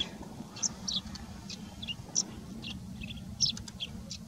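Male yellow-throated sparrow (chestnut-shouldered petronia) calling in a run of short, high chirps, about three a second, some coming in quick pairs: breeding-season calling.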